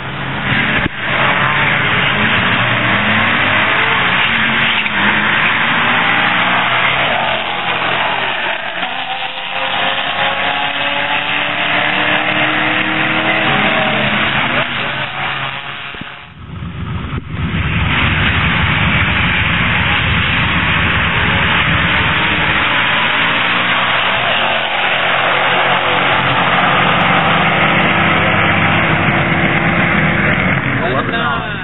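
2011 Mustang GT's 5.0 Coyote V8, breathing through an off-road X-pipe and Flowmaster axle-back exhaust, run at full throttle down a drag strip, its pitch climbing and falling back through the gear changes. The sound breaks off briefly about midway, then a second full pass follows.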